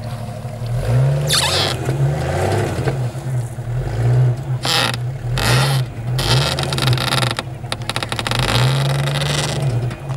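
Jeep Grand Cherokee engine revving up and down repeatedly under load as its tires spin and scrabble in snow, climbing a snowbank. Short rushes of tire and snow noise come with the harder throttle bursts.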